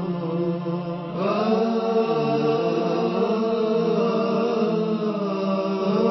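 Wordless vocal chant: voices hold long notes over a steady low drone, moving to a new pitch about a second in.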